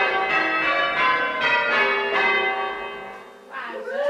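A ring of six church bells rung full-circle by hand ringers, the strikes following one another in a steady round until about two-thirds of the way through, then the ringing dying away.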